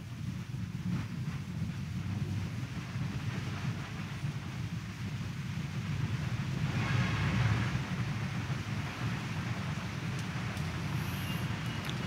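Ambient room noise in a church: a low, steady rumble with a soft hiss that swells briefly about seven seconds in.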